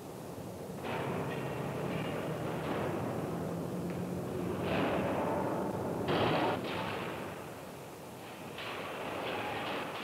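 Steel slab mill machinery working: a continuous rumbling, hissing industrial noise with a low steady hum under it, swelling in heavy surges about five and six seconds in.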